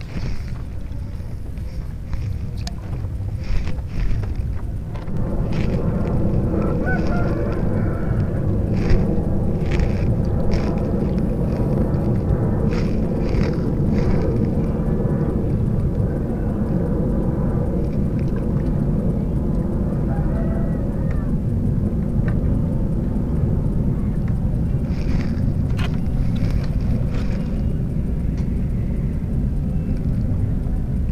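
An engine droning steadily over a low rumble, getting louder about five seconds in and then holding level. Scattered light clicks come through as fishing line and hook are handled.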